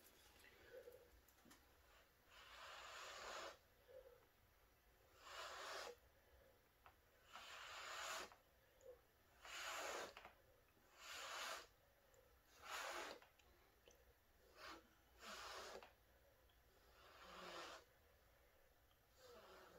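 A person blowing by mouth onto wet acrylic paint at the canvas edge, about nine soft puffs of breath, each under a second long, one every couple of seconds, to push the paint outward and open up the bloom.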